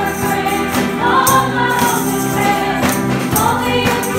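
A live worship band and group of singers performing a contemporary gospel worship song, with hand tambourines shaken and struck at intervals over the singing.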